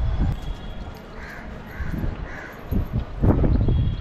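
A crow cawing three times in quick succession, about a second in, over low rumbling and rustling close to the microphone.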